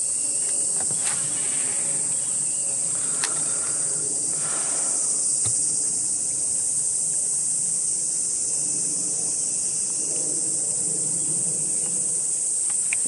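Steady high-pitched drone of insects, with a few faint clicks.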